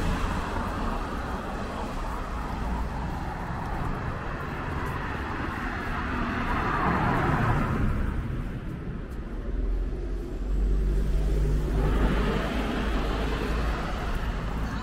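Cars passing one after another on a wet road, their tyres hissing on the wet asphalt over a low engine rumble. The loudest pass comes about seven seconds in, and another car's hiss builds near the end.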